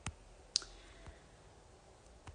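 Three short, faint clicks: one right at the start, a sharper, louder one about half a second in, and a fainter one about a second in.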